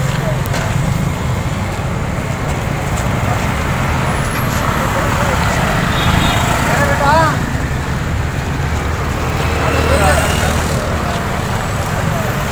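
Steady street noise of passing road traffic, a low rumble, with short bits of people's voices about seven and ten seconds in.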